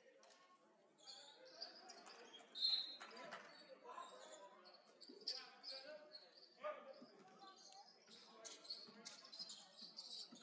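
Faint court sounds of a live basketball game: a basketball bouncing on the hardwood floor as it is dribbled, short high squeaks of sneakers, and scattered distant voices from players and crowd.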